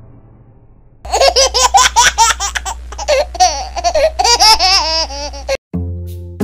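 High-pitched laughter in rapid repeated bursts, starting about a second in and cutting off sharply near the end.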